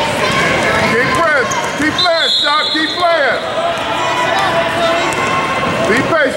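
Basketball game play in a gym: sneakers squeaking on the court in short bursts, mostly between one and three and a half seconds in and again at the end, with a basketball bouncing and spectators' voices echoing around the hall.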